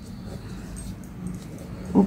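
Steady low electrical hum with the faint scratch of a ballpoint pen writing numbers on paper.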